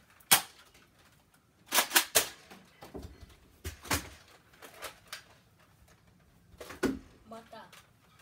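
Nerf foam-dart blasters firing and darts striking: a scattered series of sharp snaps, several coming in quick pairs or triples, the loudest right at the start.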